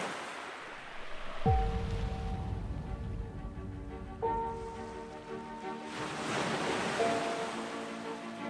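Wind and surf noise on the microphone. About a second and a half in, background music of sustained held chords starts, changing chord twice.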